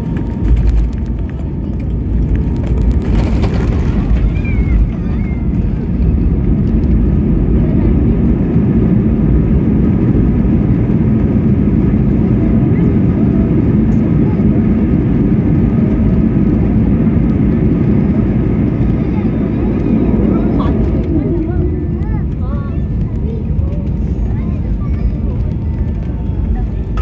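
Steady low rumble of an airliner heard from inside the cabin, with faint voices in the background.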